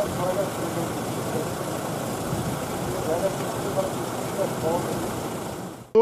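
Steady street noise with an idling car engine and the indistinct voices of several people talking. The sound cuts off abruptly near the end.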